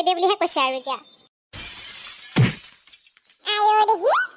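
A shattering crash sound effect in the middle, lasting about a second and a half, with a deep thud partway through. High-pitched cartoon voices speak before and after it.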